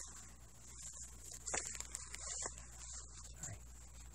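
Faint rustling of a cloth doll's fabric leg and boot being handled and pinned together, with a couple of short sharp clicks around the middle, over a low steady hum.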